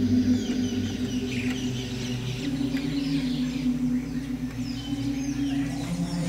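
Short chirping bird calls scattered throughout, over a low steady droning hum whose pitch shifts about two and a half seconds in.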